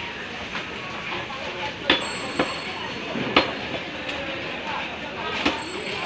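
Butcher's cleaver chopping beef on a wooden tree-stump block: three loud chops spaced roughly one and a half to two seconds apart, with a couple of lighter knocks between them.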